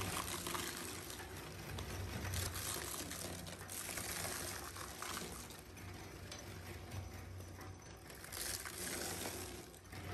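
Radial tyre shredder running: a steady low motor hum under a rushing, crackling noise from its rotating cutter shafts.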